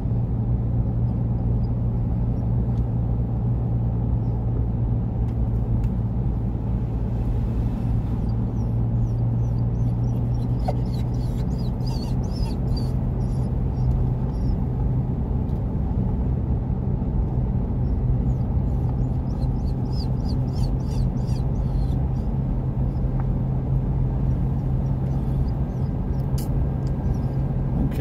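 Steady in-cabin road and engine noise of a car driving downhill: a constant low hum over a rumble, with faint, irregular high ticks or chirps through the middle.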